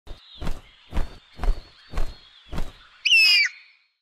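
Five wing-flap whooshes, about two a second, then one harsh cockatoo screech about three seconds in, over a faint steady high tone.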